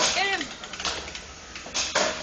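Antweight combat robots clattering in the arena: a sharp clack right at the start and another knock near the end, with a short vocal exclamation just after the first hit.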